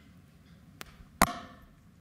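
Handling noise from a podium gooseneck microphone as it is taken in hand: a faint click, then a sharp knock about a second in, over low room hum.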